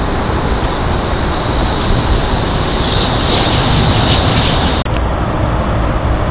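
Loud, steady rushing outdoor noise, heaviest in the low end, with a brief break about five seconds in.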